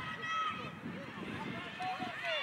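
Faint, distant shouts and calls of players and coaches across the pitch, over outdoor background noise.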